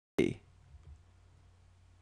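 A sharp click as the recorded audio cuts back in from dead silence, with a brief fragment of voice right on it, then faint room tone with a low hum.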